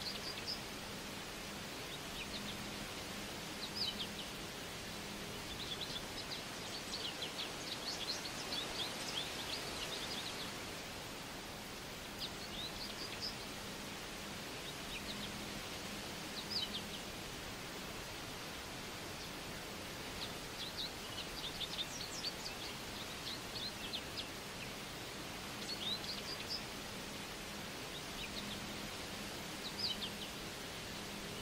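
Small birds chirping, short high calls coming singly and in quick runs of several, thickest about a third of the way in and again about two-thirds through, over a steady outdoor hiss.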